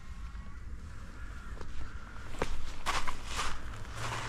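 Footsteps on the lake shore's gravelly sand and stones. A few crunchy steps begin about two and a half seconds in, over a low steady rumble.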